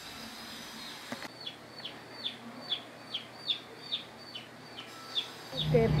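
A bird calling: a run of short, high, falling notes, about three a second, starting about a second in and lasting some four seconds.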